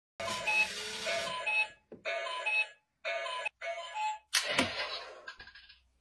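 Digital alarm clock sounding a melodic beeping alarm in repeated short phrases. A little past four seconds in, a sudden sharp crack cuts in, followed by a fading rush of noise.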